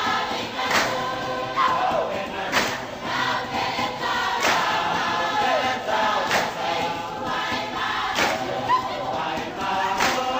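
A group of voices singing together over a strong percussive beat, with a sharp strike about every two seconds and lighter ones between: the music for a Polynesian dance performance.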